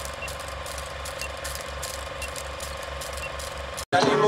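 Film projector sound effect under a film-leader countdown: a steady mechanical clatter of the film running through, pulsing about five times a second, with a faint short beep once a second. It cuts off suddenly near the end.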